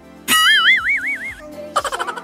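A cartoon 'boing' sound effect: a sudden tone that rises and then wobbles in pitch for about a second, over light background music with a steady beat. A second, noisier effect with a fast rattle cuts in near the end.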